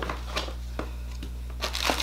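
Packaging being handled while a warmer is unpacked: a few light clicks, then rustling and crinkling that grows louder near the end.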